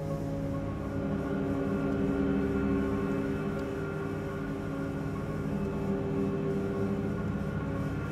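Dark, droning film score: low held tones layered over a deep rumble, building tension with no beat.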